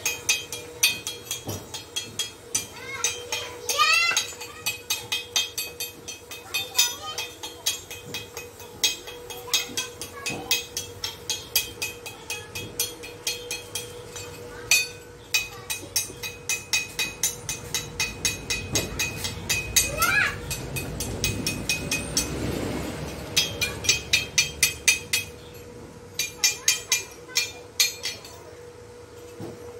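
A chipping hammer striking steel in runs of quick, ringing metallic taps, several a second with short pauses, knocking welding slag off the weld at the foot of a steel rod.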